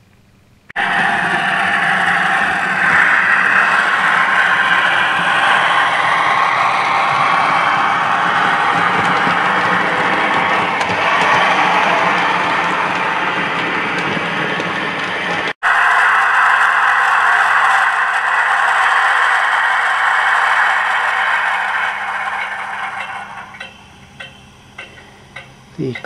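OO gauge model train running along the track: a loud, steady whirr and rattle of motor and wheels on rail. It cuts off abruptly about halfway through, carries on again, and fades near the end.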